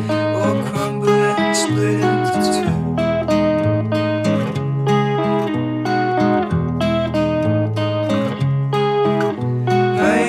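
Instrumental stretch of a song: acoustic guitar strummed in a steady rhythm through changing chords, with no singing.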